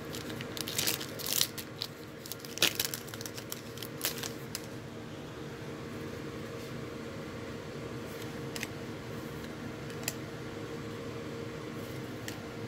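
Trading-card pack wrapper being torn open and crinkled, a run of crackles over the first four seconds or so. After that only a steady background hum remains, with an occasional faint tick as the cards are handled.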